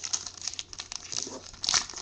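Plastic wrapper on a sealed trading-card pack crinkling and tearing as it is opened by hand. The crackles come irregularly, with a louder burst near the end.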